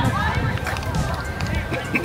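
Walking outdoors with a phone: a low, uneven rumble of wind on the microphone, with brief faint snatches of voices near the start and end.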